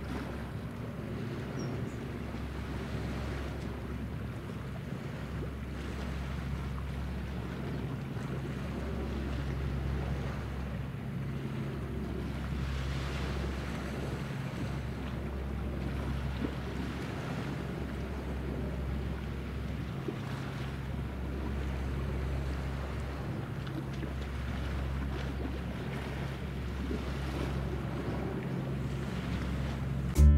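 Distant small motorboat engines droning steadily across open water, with wind rumbling on the microphone.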